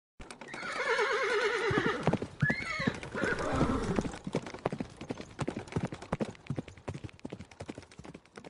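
Horse sound effect: a horse neighs with a long, wavering whinny and a rising-and-falling squeal. Hooves then clip-clop in a quick, uneven patter that grows fainter.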